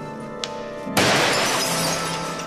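A wall mirror smashing about a second in: a sudden crash of breaking glass that trails off as the shards fall and settle.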